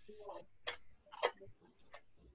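A few short, sharp clicks, about half a second apart, over a faint background.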